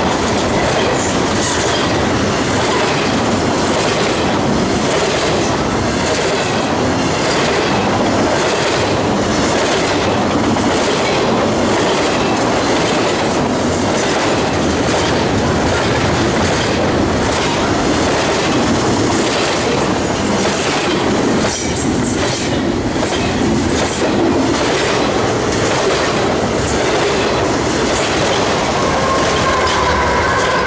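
Double-stack intermodal freight train passing close by at speed: a steady, loud rumble and rattle of steel wheels on the rails, with a regular clickety-clack as the well cars' wheels cross rail joints.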